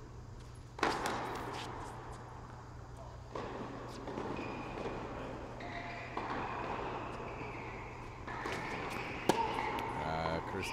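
Tennis racket striking the ball on a serve, a sharp crack with a hall echo about a second in, and another sharp hit near the end; the serves end in a double fault.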